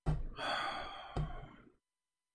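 A man sighing, a breathy exhale close to the microphone, with a low thump as it begins and another about a second in.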